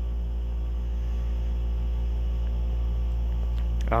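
Thermotron S-16-8200 temperature chamber running at about 190 °C, just short of its 191 °C set point: a steady machine hum with a strong low drone and a few faint steady tones above it.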